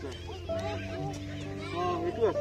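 Background music with steady held notes, and a voice sliding up and down in short arched calls over it.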